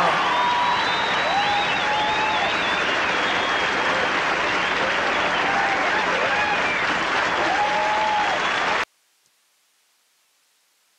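Audience applauding at the end of a live song, with scattered whistles and cheers over the clapping; it cuts off suddenly near the end.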